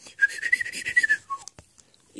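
A whistled imitation of R2-D2's droid beeping: one held whistle rising slightly in pitch for about a second, then a short falling note.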